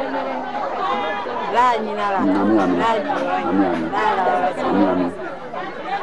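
Several people talking at the same time, their voices overlapping in lively chatter.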